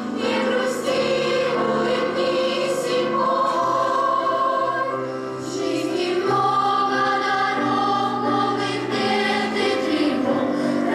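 Combined girls' choir singing a song in parts, with long held notes and a brief dip in loudness a little past the middle, accompanied by grand piano.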